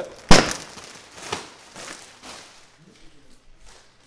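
Cardboard and plastic piano packing being handled: one sharp, loud knock about a third of a second in, then a few softer knocks and rustles that die away near the end.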